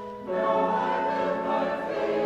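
Mixed church choir singing held notes of a hymn or anthem; after a brief break at the start, a new phrase comes in.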